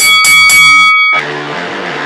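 Radio station promo music. A loud, bright stinger with a few quick hits and ringing high tones lasts about a second, then a quieter music bed carries on under the break.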